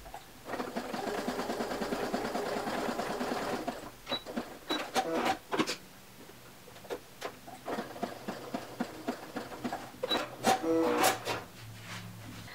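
Domestic sewing machine sewing a narrow zigzag stretch stitch along a knit-fabric seam at a steady speed for about three seconds, then stopping. It is followed by scattered clicks and two short high beeps as the machine is stopped and the fabric and thread are cleared from the needle.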